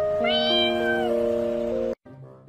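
A kitten gives one high meow, about a second long, that rises at the start and falls away at the end, over background music with long held notes.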